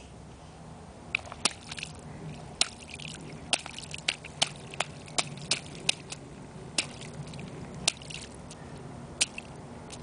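A small child stepping and stomping in a shallow mud puddle: a string of irregular sharp wet splats and squelches, starting about a second in.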